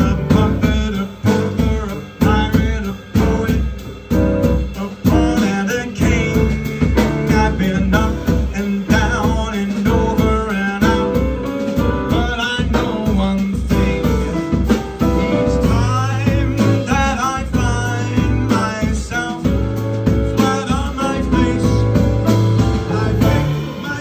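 Live jazz band with an upright double bass playing with a steady beat, while a male singer sings into a microphone over it.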